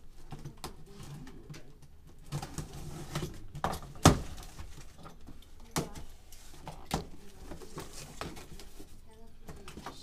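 Cardboard box being unpacked by hand: packaging rustling and scraping, with scattered knocks of parts and box against the desk. The loudest is a sharp knock about four seconds in.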